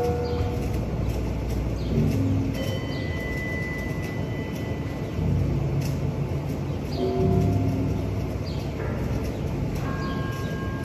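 Outdoor urban ambience: a steady low rumble with a few short, steady high tones over it.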